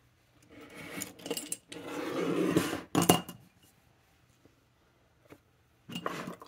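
Pens rattling and clinking against a glass jar as the jar is moved onto the desk, ending in a sharp clink about three seconds in.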